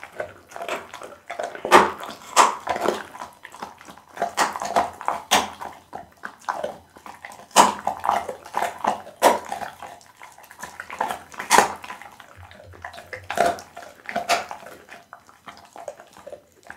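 Pit bull chewing boiled loach close to the microphone with its mouth open: irregular chews, with a sharper, louder one every second or two.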